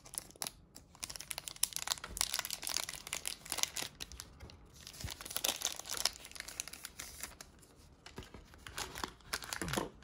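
Trading card pack wrapper being cut open and handled, crinkling and tearing in a dense run of irregular crackles that thins out about seven seconds in.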